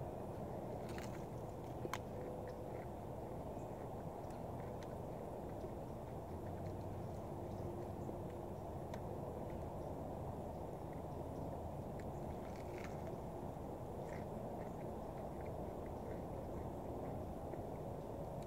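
Faint sounds of eating crispy breaded fried chicken: scattered soft crunches and mouth clicks from bites and chewing, over a steady low outdoor background hum.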